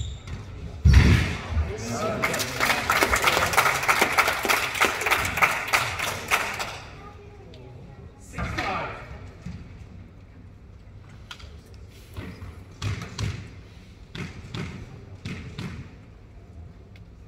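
A squash ball strikes hard about a second in. Then about five seconds of spectators clapping and talking follow, and after that come scattered single knocks of the ball and racket as play resumes.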